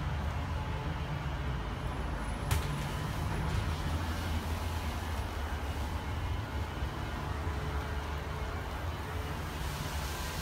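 Steady low motor hum with a single sharp click about two and a half seconds in.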